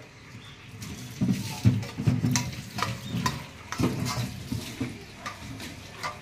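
A metal spatula clinking and scraping against a steel plate and a cooking pot as curry is served, in a dozen irregular clicks and knocks with some dull low thuds.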